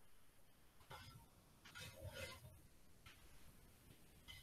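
Near silence: faint room tone with a few soft, brief rustling sounds.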